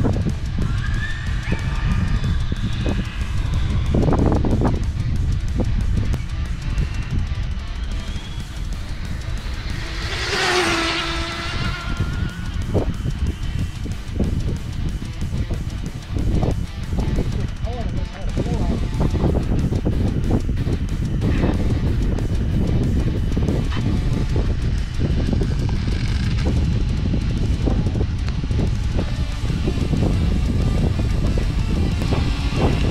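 Wind buffeting the microphone, a steady low rumble with scattered knocks. About ten seconds in, a brief whine falls in pitch.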